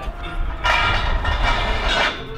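Steel scaffolding parts clattering and scraping against each other as they are handled on a truck bed. A loud metallic rush with ringing overtones starts a little over half a second in and lasts more than a second, over a steady low rumble.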